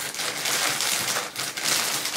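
Packaging crinkling and rustling as it is handled, a dense run of fine crackles.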